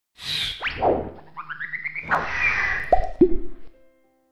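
Cartoon intro sound effects: a whoosh, a quick falling plop, a short run of rising notes, a second whoosh, then two quick falling plops near the end.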